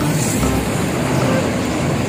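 Highway traffic passing close by: a motorcycle and a heavy box truck going past, making a steady rush of engine and tyre noise.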